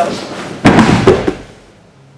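A body thrown down onto a padded martial-arts mat: one loud thud with a rustle of heavy cloth, a little over half a second in and lasting under a second.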